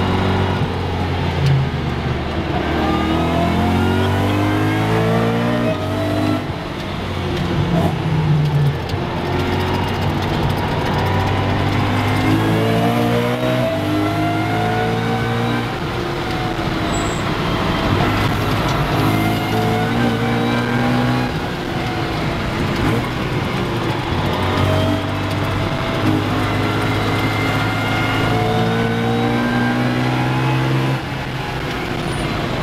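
BMW M3 E92's 4.0-litre V8 breathing through a full Akrapovic exhaust, heard from inside the stripped cabin at full-speed track driving. It climbs in pitch again and again as it pulls through the gears, with brief breaks at each upshift.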